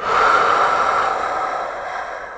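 A long breath blown out through pursed lips. It starts sharply and fades away over about two and a half seconds.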